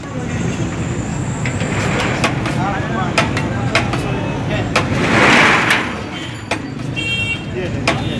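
Busy street ambience with traffic running and people talking, over sharp clinks of a plate scooping rice against the aluminium cooking pot. A loud rushing swell, like a vehicle passing close by, rises and fades about five seconds in.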